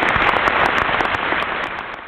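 Audience applauding: dense, steady clapping that thins toward the end and cuts off abruptly. It is heard on an old recording with little treble.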